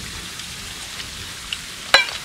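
Steady outdoor background hiss with no voices, broken by a faint tick and then a single sharp click near the end.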